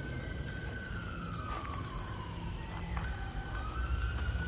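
A siren wailing, its pitch sliding slowly down and then back up, over a low rumble.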